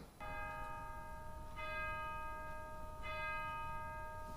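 A bell struck three times, about a second and a half apart, each stroke ringing on under the next.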